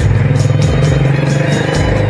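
Instrumental interlude of a Bollywood karaoke backing track: a loud, buzzing low synth line over fast, evenly spaced percussion ticks, with no singing.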